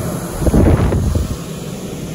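Low rumbling noise on the microphone, swelling about half a second in and easing off after about a second.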